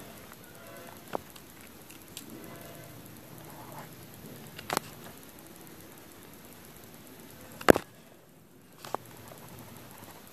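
Gel pens being handled and used on a spiral notebook: a few short, sharp clicks, the loudest a little before the end, over a faint steady hiss.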